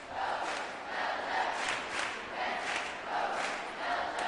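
Crowd of supporters chanting and shouting in a steady rhythm, about three beats a second, in a sports hall.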